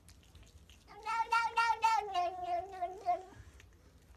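Domestic cat giving one long meow of about two seconds, starting about a second in; it pulses at first, then sinks slightly in pitch before stopping.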